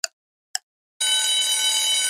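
Quiz countdown timer sound effect: two ticks half a second apart, then about a second in a loud, steady alarm tone rings out as the timer reaches zero, signalling that time is up.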